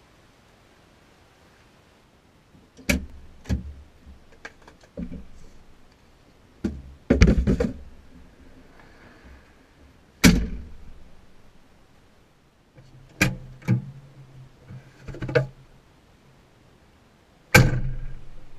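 Skateboard on concrete: about ten sharp clacks and thunks as the deck and wheels strike the pavement, with a low rolling rumble of the wheels between some of them.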